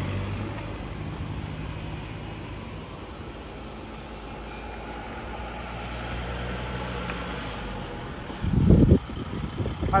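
Police vehicle engines at low speed: a car pulling away, then a Mercedes-Benz Sprinter police van driving up and stopping close by, its engine running steadily. A short loud burst comes near the end.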